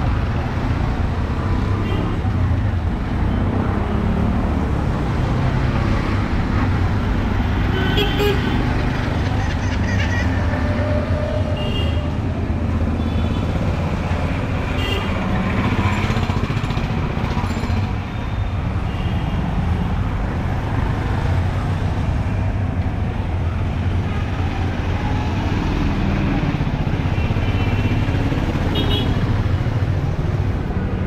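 Busy city street traffic: a steady rumble of engines, with several short horn toots and the voices of passers-by.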